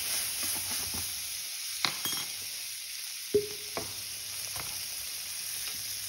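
Melting butter and capers sizzling in a frying pan, a steady hiss that eases a little over the first few seconds with the heat turned down. A few light clinks of a metal measuring spoon sound over the sizzle.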